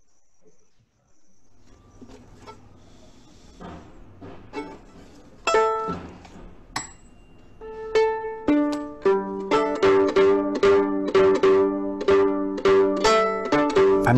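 Violin strings plucked with the fingers while the pegs are turned: the violin being tuned. A few scattered plucks build to a regular run of two or three a second, each note ringing on.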